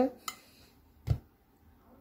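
A woman's brief spoken words with a small sharp click between them, then quiet room tone.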